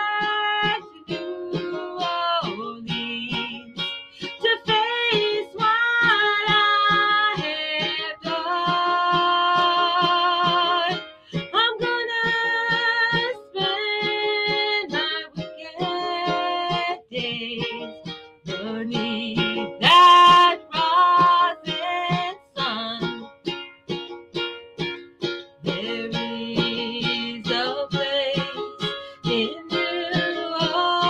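A woman singing a folk-style song to her own steady strumming on a small lute-bodied, ukulele-like instrument, held notes wavering slightly, loudest about two-thirds of the way through.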